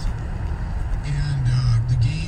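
Steady low rumble of a car's cabin while driving. About a second in, a man's voice from a talk radio broadcast resumes over it.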